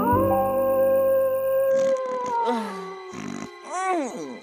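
Cartoon wolf howl sound effect over music: one long call that rises at the start, holds, and falls away after about two and a half seconds.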